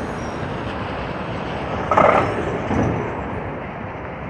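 Diesel road-vehicle noise as a box truck passes close by and a double-decker coach moves off, a steady rumble with a short louder burst about two seconds in, fading slightly toward the end.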